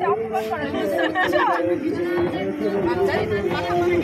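Several people talking over one another, with a steady held tone running underneath.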